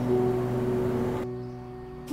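Soft background score music holding sustained notes. The background hiss under it cuts off suddenly a little past halfway.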